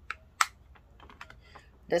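A small clear plastic eyeshadow case being handled and opened: two sharp plastic clicks about a third of a second apart near the start, the second the louder, then a few faint ticks.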